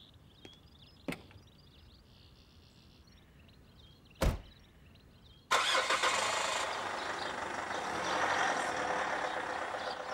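A few faint footsteps, then a car door shutting with a thump about four seconds in. About a second later the pickup truck's engine starts abruptly and keeps running.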